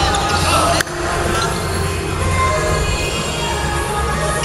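Indoor basketball court sounds at a tip-off: a ball bouncing on the wooden floor amid players' voices, with a sharp click about a second in.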